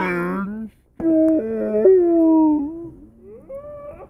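Howling voice: a long, wavering call breaks off just before a second in, then a second drawn-out howl steps up and down in pitch before trailing into fainter, rising calls near the end.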